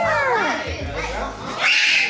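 Excited children's high-pitched voices squealing and calling out in greeting, with a sharper shriek near the end, over background music.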